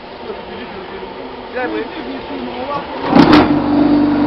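Concrete block machine's vibration motor switching on about three seconds in with a brief metallic clatter, then running with a loud, steady hum. Quiet voices come before it.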